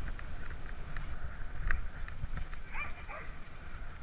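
A dog gives a couple of short yelps about three seconds in, over a steady low rumble from riding along the gravel track.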